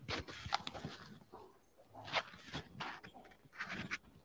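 Rustling and scraping handling noise from a clip-on microphone being fitted to clothing, in irregular bursts.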